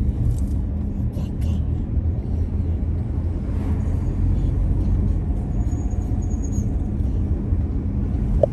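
Steady low rumble of a car being driven slowly along a street: road and engine noise. There are a few light clicks in the first couple of seconds.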